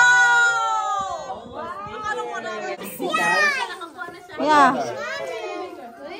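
Excited voices of children and adults at a party: one long, high, drawn-out exclamation at the start, then short excited calls and chatter.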